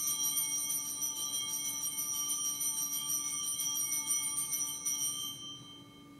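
Altar bells (sanctus bells) rung at the elevation of the host after the consecration. They give a bright, shimmering jingle of many high tones that stops about five seconds in and dies away.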